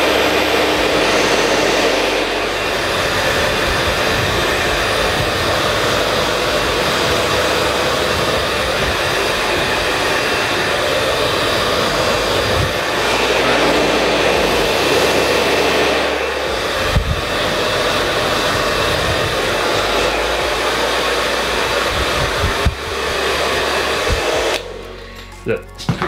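Handheld hair dryer blowing cold air, a steady loud rushing hiss of fan and airflow as it is played over curly hair; it is switched off near the end.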